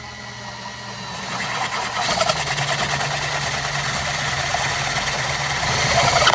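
Cordless drill with a 13/16-inch spade bit boring through the plastic wall of an ammo can. The motor runs steadily, and the sound grows louder and rougher about two seconds in as the bit bites into the plastic.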